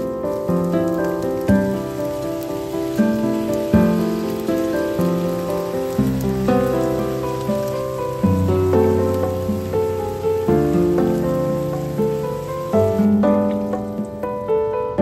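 Eggplant strips sizzling as they stir-fry in a pan over high heat, under background piano music; the sizzle drops away near the end.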